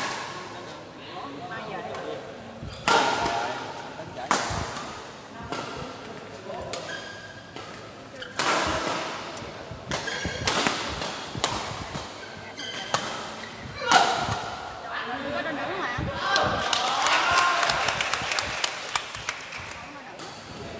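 Badminton rackets striking a shuttlecock during play in a hall: sharp, separate hits and thuds spaced a second or more apart, under people's voices. Near the end the strikes come thicker and faster amid louder voices.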